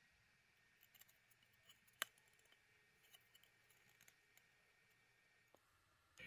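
Near silence, with one short, sharp click about two seconds in.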